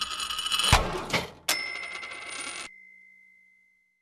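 Short outro sound logo: a busy run of bright ringing sounds, a low thump about three-quarters of a second in, then a sharp hit at about a second and a half that leaves a single ringing tone dying away over the next two seconds.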